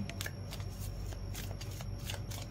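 A tarot deck being shuffled by hand: short, irregular flicks and slides of the card edges, over a low steady hum.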